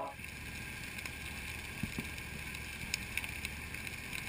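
Faint, steady low rumble of background noise with a few scattered light clicks.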